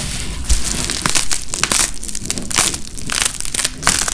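A thick skin of dried paint, about 50 layers deep, being peeled off bubble wrap: an irregular run of crackling, crinkling and tearing as the paint pulls away from the plastic bubbles.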